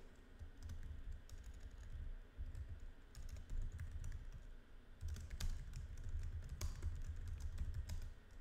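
Computer keyboard typing: irregular keystrokes entering a line of code, over a low background rumble.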